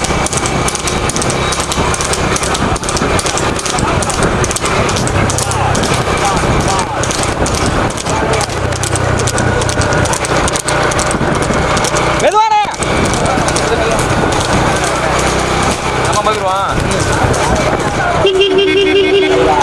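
Racing horses' hooves clattering on a paved road as rekla sulky carts pass, under loud voices. A brief rising-and-falling tone cuts through about twelve seconds in.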